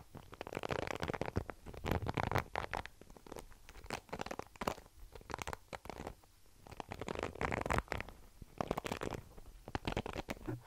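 Plastic bristles of a paddle hairbrush being scratched and rubbed close to the microphone. It comes in bursts of rapid, crackly clicks with short quieter gaps between them.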